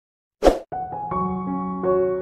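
Dead silence, then a single short, sharp pop about half a second in, followed by calm music of sustained, held notes.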